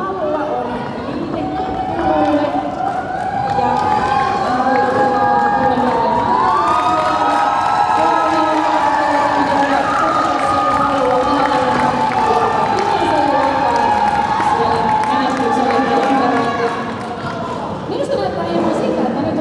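Crowd of roller derby spectators cheering and shouting together in a sports hall, many voices at once. It swells about three seconds in, holds loud, and eases off near the end.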